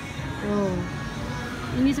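A short vocal sound about half a second in, and a voice starting again near the end, over steady background music.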